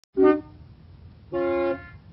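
Car horns honking in a town: a short, loud toot right at the start and a longer, steady honk about a second and a half in, over a low steady rumble.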